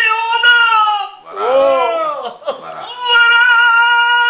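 An elderly man singing in a high, strained voice: a long held note, then a bending, wavering phrase in the middle, then another long held note near the end.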